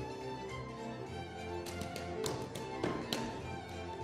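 Hungarian folk dance music led by a fiddle. Between about one and a half and three seconds in, a quick series of sharp taps from the dancers' boots on the stage floor sounds over it.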